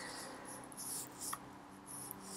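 Faint scratching and rubbing at a desk, with one sharp click a little past halfway, over a low steady hum.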